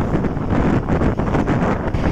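Wind buffeting the microphone of a moving vehicle at road speed: a loud, steady rumble.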